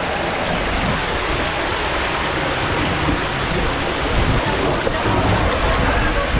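Water rushing through a tube water slide, a steady noise that grows a little louder in the last couple of seconds.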